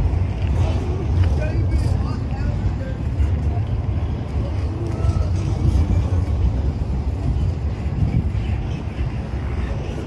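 Double-stack intermodal freight train rolling past close by, its well cars rumbling steadily over the rails, with a few faint short squeaks from the running gear.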